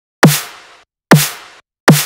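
Synthesized snare drum sample triggered three times, under a second apart. Each hit is a sine-wave body that drops quickly in pitch, layered with white noise and a reverb-soaked clap tail, compressed and saturated together, and dies away in about half a second.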